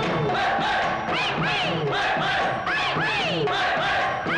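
A chorus of men shouting rhythmic group cries, each call rising and then falling in pitch, a few a second, as part of a film song's dance sequence.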